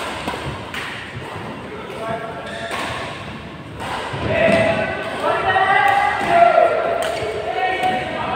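Badminton rackets striking a shuttlecock in a large echoing hall: a few sharp hits over the first four seconds. Then players' voices call out loudly for the rest of the time.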